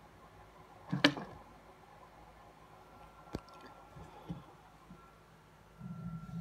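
A ball python strikes at a rat: a sudden thump and rustle about a second in, the loudest sound here, followed by a single sharp click and a few soft knocks.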